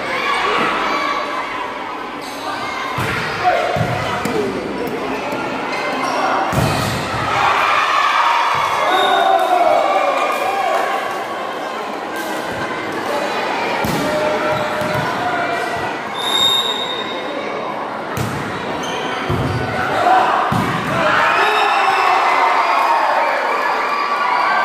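Indoor volleyball rally in a large hall: sharp smacks of the ball off hands and floor at irregular intervals, over continuous shouting from players and spectators. The shouting swells into cheering near the end.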